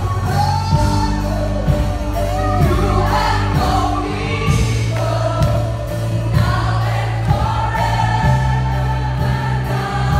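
Christian worship music: a group of voices singing together over a band with sustained bass notes and a steady beat.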